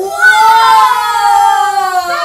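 A girl's voice holds one long, loud, drawn-out vocal cry for about two seconds. It rises slightly and then slides down in pitch at the end.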